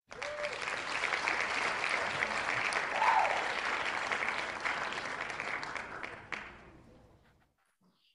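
Recorded applause sound effect from an online name-picker wheel, signalling that a winner has been drawn. It starts suddenly and fades out about seven seconds in.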